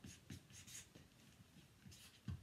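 Felt-tip marker writing on a pad of chart paper: a run of short, faint pen strokes scratching across the paper.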